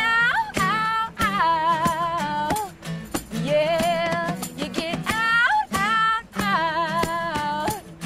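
Acoustic band music: a woman's lead vocal sings long held notes with a wavering vibrato over strummed acoustic guitars and a shaken tambourine, in several phrases with short breaks between them.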